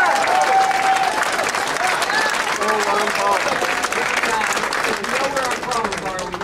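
Crowd of supporters clapping and cheering, with scattered shouting voices, dying down toward the end.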